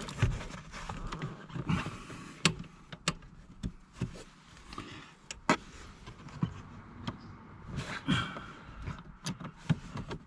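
Irregular clicks and knocks of a hand tool working on a seat-rail bolt at the base of a car's driver's seat, with some rustling of hands and tool.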